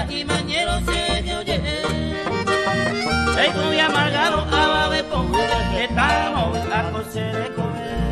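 Instrumental passage of Paraguayan music played on acoustic guitars, with a bass note pulsing on each beat under a melody line whose notes bend up and down.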